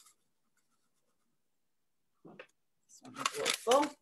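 Near silence for about two seconds, a brief short sound, then a person speaking near the end.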